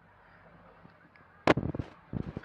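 Faint steady hiss, then a sudden loud sharp burst of noise about a second and a half in, followed by a few short crackles.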